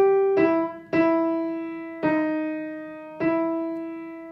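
Knight upright piano played one note at a time with the right hand: a slow melody of single notes, each struck and left to ring and fade before the next. A note is repeated, then steps down a little and returns.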